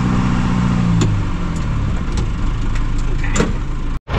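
John Deere loader tractor's diesel engine running steadily, then its revs falling away about a second in. A few sharp knocks sound over the engine.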